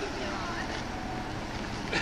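Faint, indistinct voices of people talking in the background over a steady hiss.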